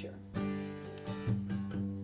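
Acoustic guitar strummed, a chord ringing on between strokes, with fresh strums about a third of a second in and again just past the middle.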